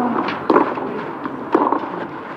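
Tennis racket strokes on the ball during a baseline rally: two sharp hits about a second apart.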